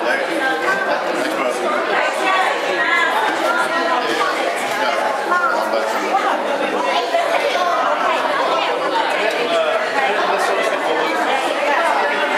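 Many people chattering at once indoors: overlapping conversation with no single voice standing out.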